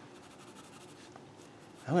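Pencil scratching faintly on paper in small strokes as the pupil of a drawn eye is shaded in. A man's voice starts speaking right at the end.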